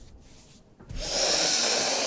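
A person's long, noisy breath out close to a microphone, starting about a second in and lasting a little over a second, with no voice in it.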